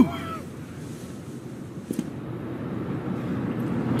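Low, steady outdoor background rumble with no distinct source, with a faint click about two seconds in.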